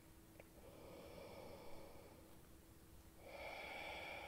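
Faint breathing of a person crouched in a yoga squat: a soft breath from about half a second in and a louder one near the end, deliberate breaths out through the mouth. A faint steady hum lies underneath.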